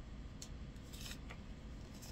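Sheets of paper being leafed through and rubbed by hand, giving a few short, crisp rustles.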